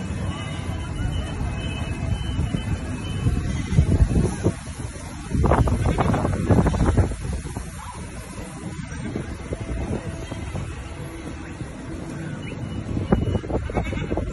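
Small amusement-park ride train running along its elevated rail track: a low, steady rumble with wind buffeting the microphone, louder for stretches about four and six seconds in.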